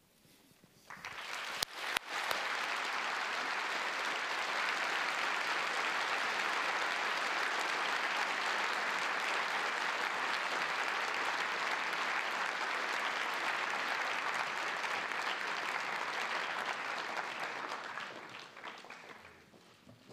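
Audience applauding: it starts with a couple of sharp claps about two seconds in, swells to a steady sustained applause, then dies away near the end.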